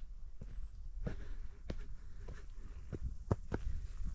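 Footsteps of a hiker walking up a dirt mountain path, a step roughly every half second, over a steady low rumble.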